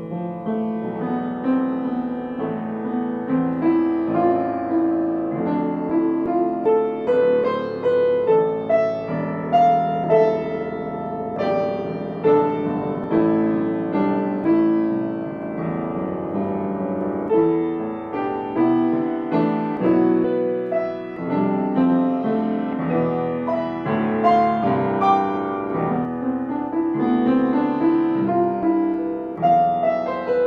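Solo piano playing an unbroken stream of notes, phrase after phrase, at an even loudness.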